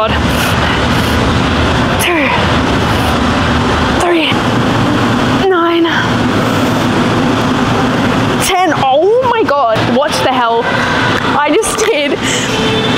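A woman's heavy breathing and strained vocal grunts, close to a chest-worn microphone, during a near-maximum set of barbell curls. A strained sound comes every couple of seconds at first, with a longer run of effortful vocalising near the end of the set.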